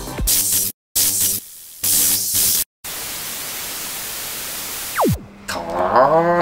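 Intro music broken up by glitchy bursts of hiss and two sudden dropouts, then a steady wash of static for a couple of seconds, cut by a quick falling pitch sweep near the end: edited title-card sound effects.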